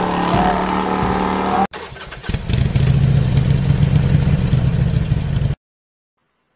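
Music that stops abruptly, then after a brief gap a loud motorcycle engine running and revving for about three seconds before it cuts off suddenly.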